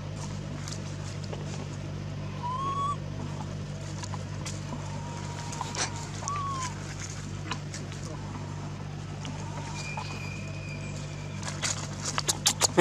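A few short, arched, whistle-like animal calls spaced seconds apart, and a longer steady high whistle about ten seconds in, over a constant low hum and scattered light clicks and rustles.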